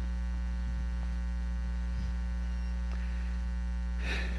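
Steady electrical mains hum, a low buzz with evenly spaced overtones, unchanging throughout. A couple of faint ticks sound about a second in and near the end.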